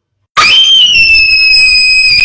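A person's high-pitched scream, held for about two seconds, starting suddenly about a third of a second in and sinking slightly in pitch, in reaction to a smashed phone.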